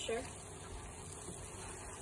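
Tomato sauce simmering in a pan, a steady soft hiss, as a wooden spoon stirs through it.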